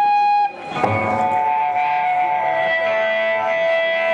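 Electric guitar through an amplifier, ringing out sustained notes: one steady high note at first, then a chord struck about a second in that holds and rings on.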